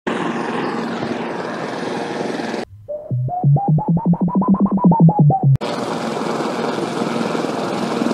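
Synthesized cartoon flying sound effects: a steady hiss that cuts off suddenly, then a quick run of about a dozen electronic beeps, about five a second, whose pitch climbs and then dips slightly, then the hiss again.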